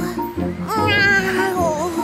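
Background music with a cartoon kitten's voice giving one long, wavering meow-like cry, starting a little before one second in and dropping in pitch at its end.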